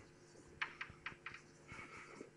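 Faint writing on a board: a quick, uneven run of sharp taps with a brief scratchy stroke near the end.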